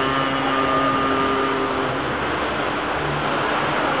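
Unaccompanied naat recitation: a man's voice holds one long, steady sung note that fades out about halfway through, over a low continuous hum.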